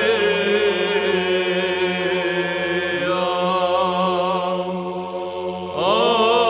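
Monks singing Romanian Byzantine psaltic chant: an ornamented melody over a steady held drone (ison). The melody steps down about halfway through, and near the end a new phrase begins with a rising slide.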